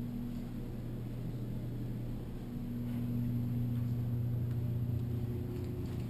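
Steady low mechanical hum, with a fainter higher overtone that drops out for about two seconds and then comes back.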